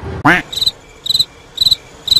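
Cricket-chirp sound effect used as an awkward-silence gag: four evenly spaced, high chirps, about two a second, after a brief voiced sound at the start.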